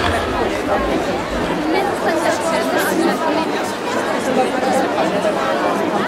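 Crowd chatter: many people talking at once in overlapping voices, with no single clear speaker.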